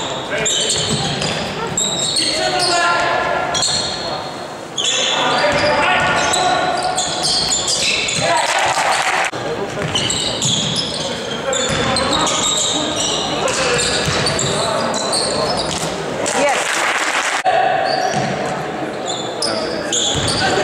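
Basketball being dribbled on a wooden sports-hall floor during play, with players' shouts and calls ringing in the large hall.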